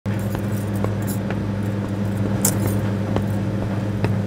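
Steady low drone of a ship's engines, with scattered light clicks and a brief metallic jingle about two and a half seconds in.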